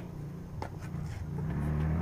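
A low, steady motor hum that grows louder about one and a half seconds in.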